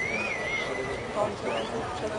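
Outdoor crowd chatter, with a high wavering tone that rises at the start and holds for about a second, followed by a short rising glide.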